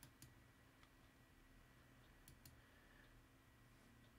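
Near silence: faint room tone with a few soft computer mouse clicks, two near the start and two about two and a half seconds in.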